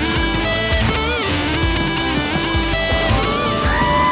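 Electric guitar played hard in a rock style, with sustained notes, a few pitch bends, and a long held note in the second half.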